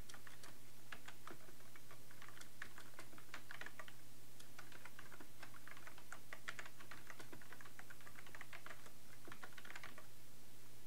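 Computer keyboard typing: irregular runs of quick keystrokes with short pauses between words, over a steady low hum.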